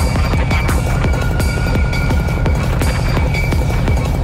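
Psytrance track: a fast, rapidly pulsing electronic bassline under a steady beat, with a held synth tone coming in about a second in.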